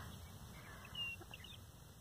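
Very quiet rural stillness with a faint low rumble, and one short, high bird chirp about a second in.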